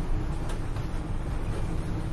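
Steady low background rumble, with no speech and no distinct events.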